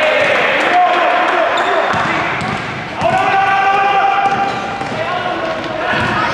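Raised voices shouting in a sports hall during a basketball game, with one long held shout from about three to five seconds in. A basketball bouncing on the court is mixed in.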